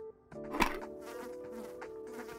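Cartoon soundtrack: a steady buzzing drone of several held tones, with one sharp hit about half a second in.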